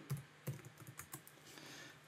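Computer keyboard typing: a quick run of faint keystrokes as a word is typed.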